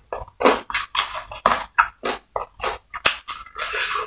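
Close-miked chewing of battered fried chicken, about three chews a second.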